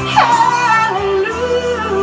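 A woman singing into a microphone: a sharp swoop down from a high note right at the start, then a quick run of shorter notes that settles onto lower, held notes.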